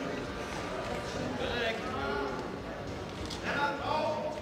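Indistinct voices, with no clear words, over a steady background murmur in a large hall.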